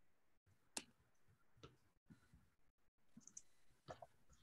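Near silence: faint room tone with a few short clicks, the sharpest about three-quarters of a second in and another just before the end.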